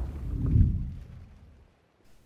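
Intro sound effect for an animated logo: a deep, low boom that swells about half a second in and then dies away to silence.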